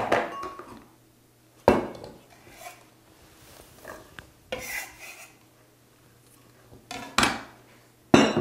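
Kitchen handling noises: a few separate knocks and clatters of a kitchen knife on a wooden cutting board and of a glass blender jar, as sliced lemongrass is put into the blender, with a short scrape about halfway through.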